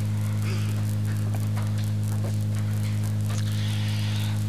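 Steady electrical mains hum, a low drone with its overtones, over faint hiss.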